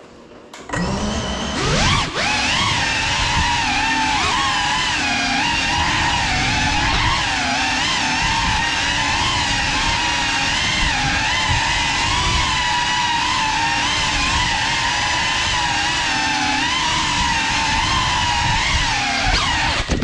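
Cinelog 35 cinewhoop drone's brushless motors and ducted propellers spooling up about a second in with a rising whine, then a steady whine that wavers up and down in pitch with the throttle as it flies.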